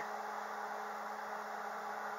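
Steady background hum with an even hiss, unchanging, with no distinct events.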